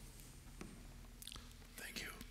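Faint whispering near the end, over a steady low electrical hum and a few soft clicks and rustles.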